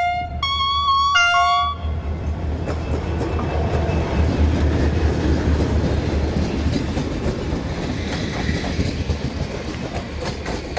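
Locomotive horn sounded in three short notes, then the locomotive of the passenger train pulls past with a steady low engine throb, loudest as the cab goes by, and the coaches' wheels clicking over the rails.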